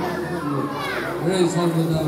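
A group of children's voices in a large hall, reciting together in a steady, drawn-out chant, with a brief high sound sliding down in pitch about a second in.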